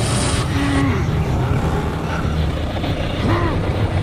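Deep, continuous rumble of a dramatised earthquake sound effect, the ground and structure shaking, with two short pitched cries or creaks over it, one about a second in and one about three seconds in.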